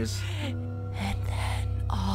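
Cartoon soundtrack with held music notes under short, gasping breaths, over a steady low hum.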